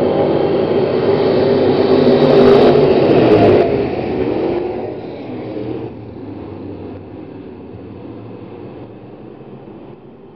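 A pack of B-Mod dirt-track race cars' V8 engines accelerating together, several engine notes rising and wavering over one another. Loudest about three seconds in, then fading steadily as the field pulls away.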